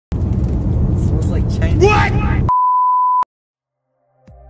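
A man's voice over loud, low rumbling noise, cut off halfway through by a steady single-pitch electronic bleep of under a second, the kind of tone an editor lays over a word to censor it. The bleep stops abruptly.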